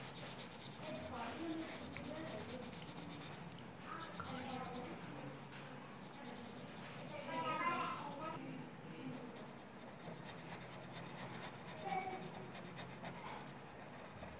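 Felt-tip marker scratching and rubbing across paper in repeated strokes while colouring in, with voices talking in the background at times.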